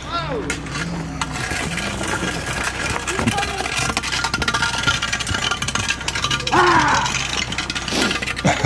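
People's voices, with a short high cry about six and a half seconds in, over a rapid mechanical rattle that builds through the second half.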